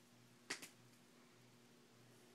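Near silence with a faint steady low hum, broken by one short sharp click about half a second in.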